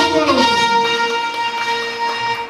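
Live band music: a melody instrument holds one long steady note, after a short falling phrase at the start.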